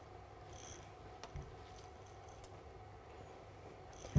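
Very quiet: a faint low room hum with soft wet rubbing and a few light ticks, as a bath sponge works shampoo lather into a wet puppy's coat.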